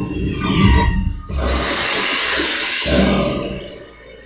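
Sound effects from an animated film's soundtrack: a sound that breaks off just over a second in, then a loud, even rushing noise for about a second and a half, fading away near the end.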